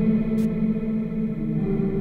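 Instrumental music led by an electric bass, a Fender Jazz Bass run through chorus and reverb effects, holding sustained notes. A short hiss of noise cuts in about half a second in.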